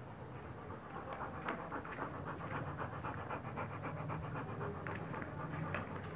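A Rottweiler panting fast and regularly, open-mouthed.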